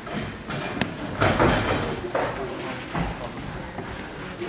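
Indistinct murmuring of an audience in a hall, with shuffling and a couple of sharp knocks about half a second and just under a second in.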